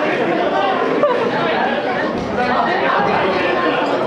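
Crowd of spectators chattering and calling out at once, many overlapping voices echoing in a large indoor hall.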